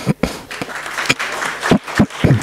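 Audience applauding at the end of a lecture: a dense patter of many hands clapping, with a cough near the start.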